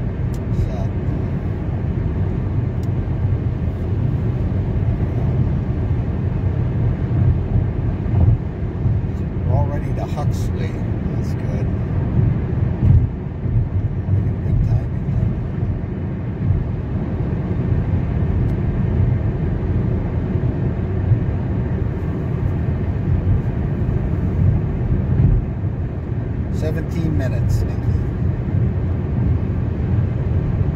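Steady road and engine noise heard from inside a car cruising at highway speed, a deep even rumble throughout. Faint brief voices come through it about ten seconds in and again near the end.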